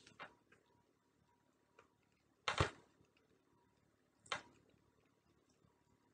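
Mouth sounds of someone eating sour tamarind pulp: a few short, sharp smacks and clicks with quiet between them. The loudest comes about two and a half seconds in and a weaker one just after four seconds.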